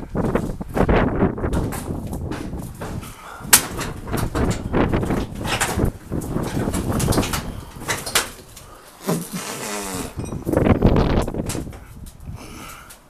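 Wind buffeting a hand-held camera's microphone, with irregular knocks and rustles from the camera being carried. A short wavering sound comes about nine seconds in.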